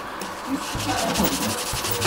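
Plastic petri dish being jiggled on a countertop: a steady rubbing, scraping noise.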